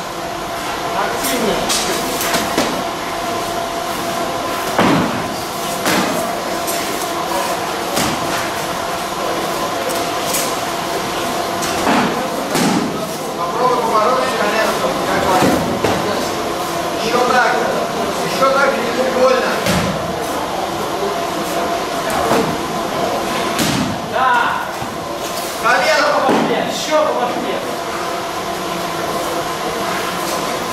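Padded foam swords striking shields and padded armour in a full-contact bout: a run of sharp thwacks every second or two, over shouting voices.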